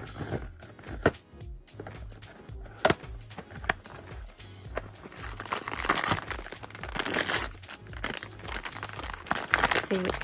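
Cardboard blind box being opened by hand: a few sharp clicks as the tab and flap come open. After that comes a dense crinkling and rustling from a plastic blind bag as it is drawn out of the box and squeezed, loudest in the second half. Background music with a steady low beat runs underneath.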